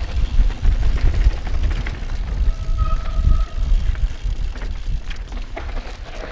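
Mountain bike riding fast down a dirt trail, heard from a helmet-mounted camera: heavy wind buffeting on the microphone over tyre noise and the bike rattling over bumps, with a short squeal about halfway through.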